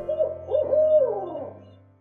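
An owl hooting: a run of short hoots, then a longer note that falls in pitch, fading out at the end.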